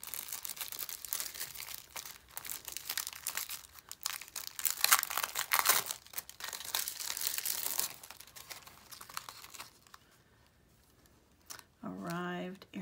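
Crinkling and crackling of a clear plastic stamp sheet being handled and peeled off its plastic backing sheet. The sound is loudest about five seconds in and dies away to quiet in the last couple of seconds.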